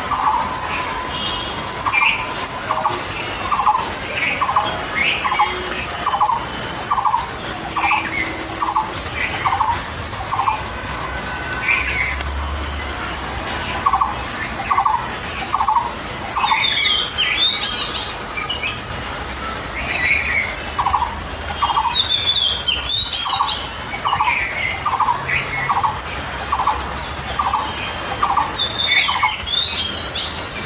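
Birds calling: one repeats a short, squeaky call about twice a second in runs with pauses between them, while higher twittering from others comes in a few times.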